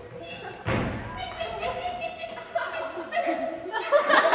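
A single heavy thump about two-thirds of a second in, a performer landing on the stage floor after jumping down from a riser, followed by scattered audience voices and laughter.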